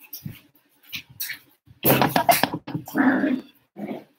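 A pet dog barking several times, the loudest calls coming in two bunches about halfway through.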